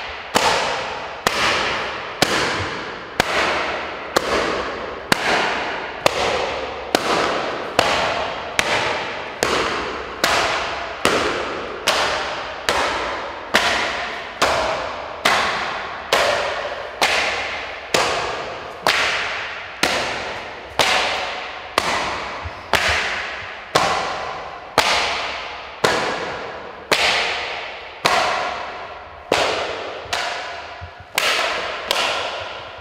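Sharp, loud slaps repeated at a very steady pace of about three every two seconds, each followed by a ringing decay that dies away before the next.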